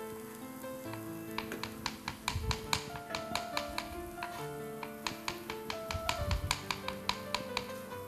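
Background music with a melody, under a knife tapping on a cutting board as fresh mushrooms are sliced, several quick taps a second.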